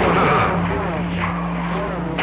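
CB radio receiving on channel 28 through its speaker: static and hiss with a steady low hum from a received carrier, and faint, garbled voice traces near the start, typical of long-distance skip reception.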